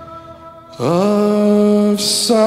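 Male baritone lead vocal in a slow, dramatic rock cover of a folk ballad. After a near-quiet pause it scoops up into one long held low note about a second in.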